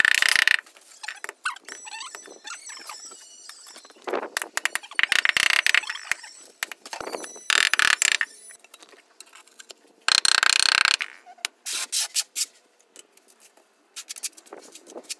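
Rubber mallet tapping a large ceramic floor tile down into its adhesive bed, in bursts of rapid knocks with short pauses between, the loudest burst about ten seconds in. The tapping beds and levels the tile.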